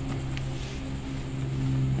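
Steady low mechanical hum from a motor or machine running, with a faint tick about half a second in.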